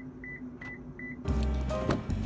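Four short, high electronic beeps about 0.4 s apart from a car, heard beside its key fob with its lights on. Music with a heavy bass comes back in a little over a second in and covers the rest.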